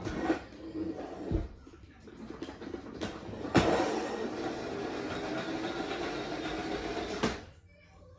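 Battery-powered toy ambulance's small motor running as it drives itself across a wooden floor, starting abruptly about three and a half seconds in and cutting off about four seconds later. The toy will only drive backwards.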